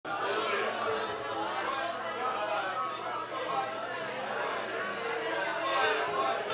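Several voices talking at once in a large, echoing room.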